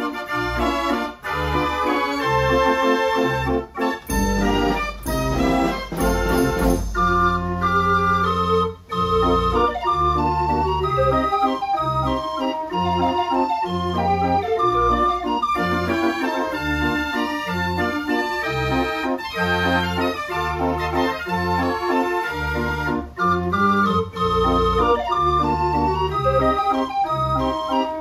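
Dutch street organ (draaiorgel) 'Willem Parel' playing a tune on its pipes, with a melody over a steady, pulsing bass accompaniment.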